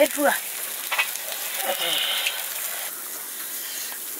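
Buffalo meat on iron skewers sizzling over glowing charcoal, a steady hiss with a sharp crackle about a second in.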